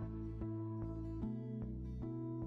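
Background music, a steady run of notes changing about every half second.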